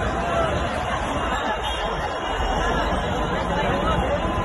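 Hubbub of a large crowd: many voices chattering at once, steady, with no single voice standing out.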